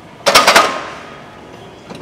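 Loaded bench press barbell racked into the power rack's steel hooks: a quick cluster of about four metal clanks a quarter second in, with a metallic ring that fades over the next second. A faint click near the end.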